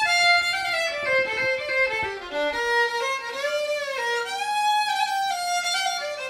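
Solo violin played with the bow, a single melodic line moving from note to note. About midway a note slides up and back down.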